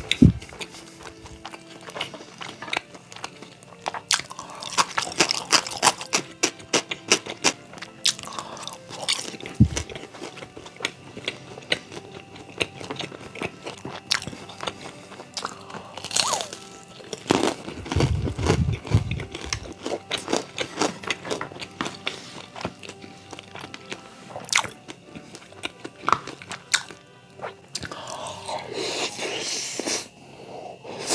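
Close-miked chewing with many sharp crunches as fried dumplings and fried rice are bitten and eaten, over soft background music.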